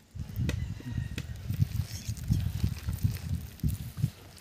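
A hand squeezing and mixing a wet chilli-and-egg masala paste in a steel bowl: irregular soft squelches and low thumps, with a few brief clicks.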